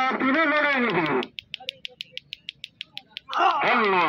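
A voice calling out for about a second. Then comes a quick, even run of sharp high ticks, about seven a second, for nearly two seconds. The voice starts again near the end.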